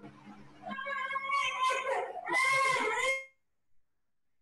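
A person's voice, with untranscribed drawn-out sounds over a faint steady hum, that cuts off suddenly a little after three seconds into silence.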